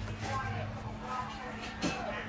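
Brief, low-level speech fragments from a man's voice over a steady low hum, with one sharp click near the end.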